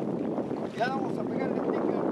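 Wind buffeting the microphone, a steady rushing noise throughout. A brief voice sound comes a little under a second in.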